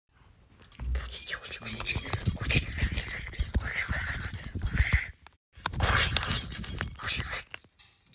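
Rustling and light clattering as doll clothes and small plastic toy parts are handled and stuffed into a toy washing machine, in two stretches with a brief break a little past halfway.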